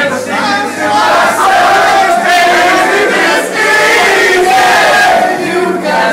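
A group of men singing loudly together, half shouting, with long held notes.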